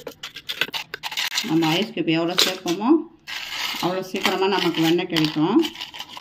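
Ice chunks clinking and scraping against a stainless-steel pot of cream as butter is being made. Over this, a voice holds long pitched notes twice.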